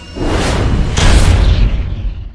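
Loud cinematic trailer sound effects: a deep boom with a rushing whoosh just after the start, then a second, louder boom about a second in, its low rumble dying away.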